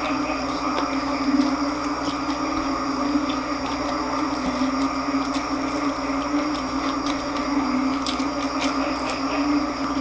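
Close-miked chewing of crispy deep-fried pork intestine (chicharon bulaklak), with a few sharp crackles near the end as the fried pieces are handled, all over a steady low hum.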